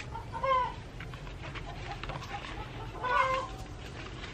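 Two short animal calls, one about half a second in and another about three seconds in, each a brief arched note over a steady low background.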